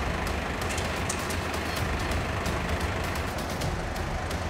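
Steady rumble of a flatbed lorry's engine running, with a few light clicks and knocks of metal being handled.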